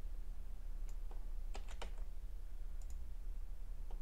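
A handful of short computer keyboard and mouse clicks, spaced apart, as text is copied and pasted, over a steady low hum.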